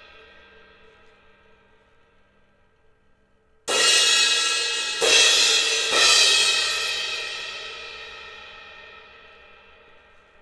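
Sabian cymbal on a stand struck three times with a drumstick, the strikes about a second apart, each leaving a bright shimmering ring. The last strike is left to ring and slowly die away. Near the start the ring of an earlier strike is still fading out.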